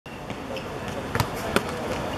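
Two sharp thuds of a football being kicked and hitting a hard court, about a third of a second apart and a little over a second in, with a lighter tap earlier.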